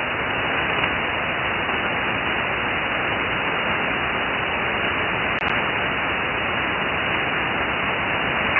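Steady hiss of static from a shortwave ham radio receiver tuned to an open 75-metre frequency, with nothing above about 3 kHz. No station answers the call.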